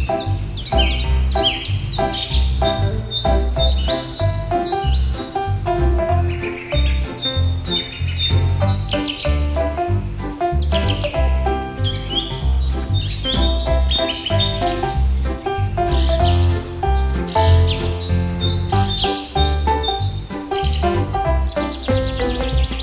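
Background music with a steady beat, with bird chirps running throughout.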